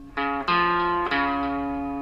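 Epiphone electric guitar playing single notes of a riff: three notes picked one after another, the last left ringing and slowly fading.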